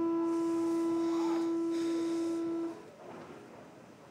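A steady electronic tone at one pitch, held for nearly three seconds, then cutting off abruptly.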